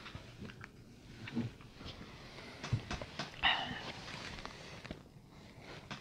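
Quiet room with a few faint clicks and one short breath about three and a half seconds in.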